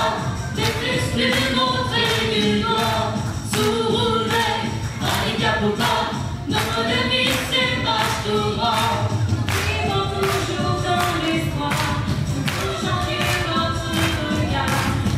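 A group of voices singing a song together, choir-like, over an accompaniment with a steady beat.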